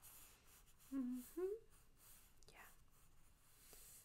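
A woman's soft, closed-mouth 'mm-hmm' of acknowledgement about a second in, the second part rising. A faint swish follows about halfway through, over quiet room tone.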